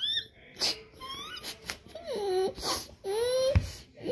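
High-pitched pretend baby crying for a doll having its ear pierced: a string of short, wavering wails that rise and fall. A sharp thump about three and a half seconds in.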